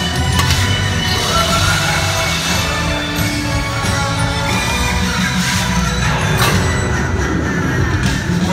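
Halloween parade music playing loudly over the parade's loudspeakers, dense and continuous with a steady heavy bass.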